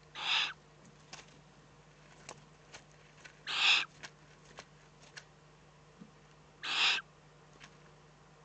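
Eurasian eagle-owl chicks giving hissing begging calls: three short hisses about three seconds apart, with faint clicks between them.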